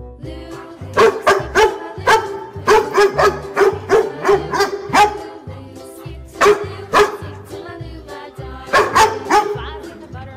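A dog barking in quick runs of barks, several a second, with a couple of short pauses, over bouncy children's background music.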